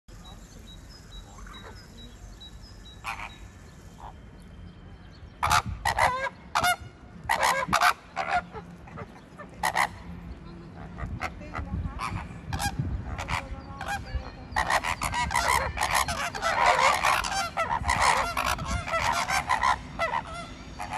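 A flock of greater flamingos honking. Scattered loud goose-like calls start about five seconds in and build to a dense, overlapping chorus over the last five seconds.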